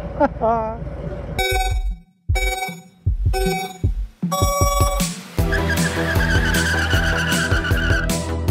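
A short laugh, then a countdown sound effect: three beeps about a second apart and a fourth, higher-pitched beep. Music starts right after the last beep.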